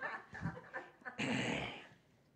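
A man's breathy laughter: a few short chuckles, then a longer laugh a little over a second in.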